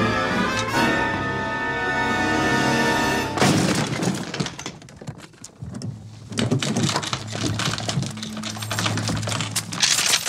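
Tense film-score music that stops abruptly with a loud crash about three and a half seconds in, followed by a run of sharp knocks and clicks over a low steady hum.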